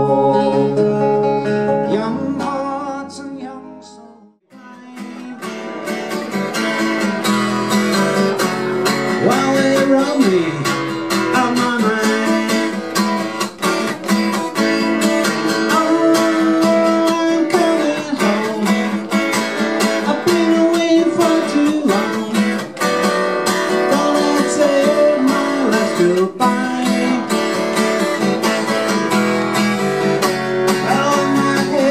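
Steel-string acoustic guitar: a strummed chord ends one song and rings out, fading to near silence about four seconds in. A new steady strummed rhythm then starts up and carries on.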